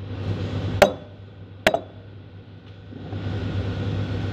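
Ceramic latte cup set down on a wooden table: two sharp clinks a little under a second apart. A steady low hum runs underneath, and the background noise grows louder about three seconds in.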